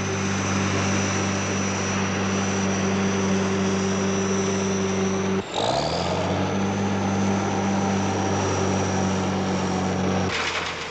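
Steady machine drone from the crane working a trench-digging grab on cables: a low engine hum with a thin high whine above it. About five and a half seconds in it breaks off abruptly, then comes back with a rising pitch and settles to the same steady drone.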